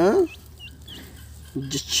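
A young chicken chick peeping faintly: two short, high peeps in the first second, between spoken words.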